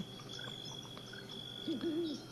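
Quiet room tone with a thin, steady high-pitched whine, and near the end a brief, wavering low hum from a man's voice, a hesitation sound between words.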